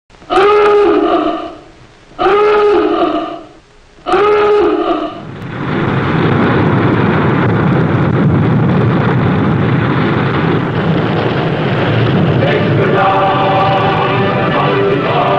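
Submarine diving-alarm klaxon sounding three times, each blast swooping up in pitch at its start. A long, steady rush of water follows as a submarine breaches the surface in a burst of spray, and music begins near the end.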